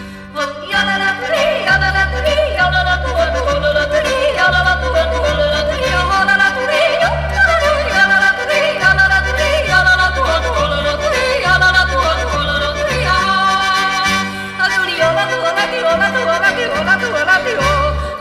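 Alpine-style yodel song: a voice yodels with quick breaks in pitch over a folk-music accompaniment whose bass alternates between two notes.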